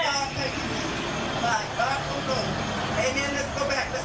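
A preacher's voice through a microphone and PA system, muffled and buried under steady noise, so the words are hard to make out.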